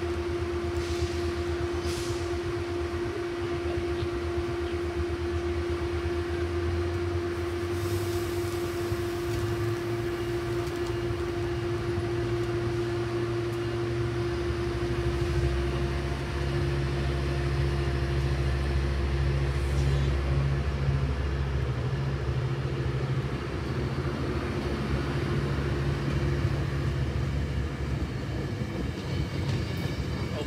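Metrolink commuter train rolling past, its diesel locomotive's engine rumble growing stronger in the second half as the locomotive draws near, over a steady hum that fades near the end.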